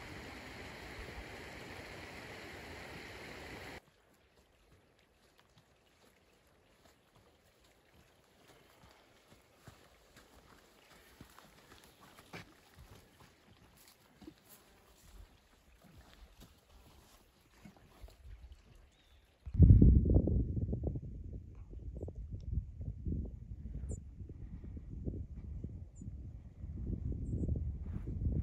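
Wind buffeting the microphone outdoors: loud, irregular low rumbles in gusts from about two-thirds of the way in, the loudest thing here. Before that, a steady hiss in the first few seconds, then near silence with a few faint clicks.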